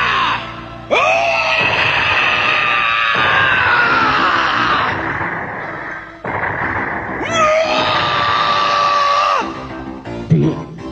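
Cartoon characters screaming in fright over background music. A long scream starts suddenly about a second in and slowly falls in pitch, and a second held scream follows near the end.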